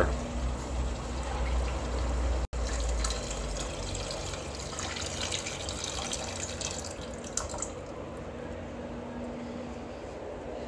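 Water poured from a large plastic water jug into a saucepan of thick tomato sauce, a steady splashing stream. The sound drops out briefly about two and a half seconds in.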